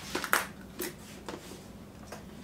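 Spice jars and seasoning shakers being handled and set down on a wooden counter: a few short, light knocks and clicks.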